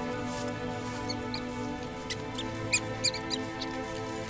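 A mouse squeaking: a series of short, high-pitched squeaks starting about a second in, thickest in the second half, over a background music score of sustained tones.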